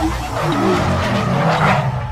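Car sound effect for a spinning-wheel animation: tyres skidding over a low engine rumble. The skid swells to its loudest shortly before the end.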